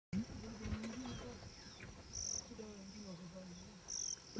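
Insects calling with a steady high-pitched trill, swelling louder briefly about two seconds in and again at the end, over a low wavering hum.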